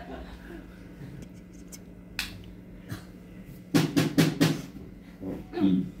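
Drum kit in the pause between songs: a steady low amplifier hum, an isolated click, then a quick run of about five sharp drum hits a little past the middle.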